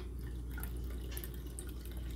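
Melted candle wax pouring in a thin stream from a metal pouring pot into a glass jar, a faint trickle over a steady low hum.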